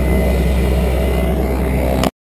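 Steady low rumble of wind buffeting the camera's microphone on an open field, with a faint steady hum above it.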